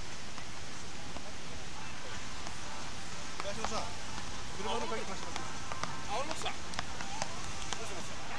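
Distant voices calling out over a steady hiss of wind and surf, with a few faint sharp clicks.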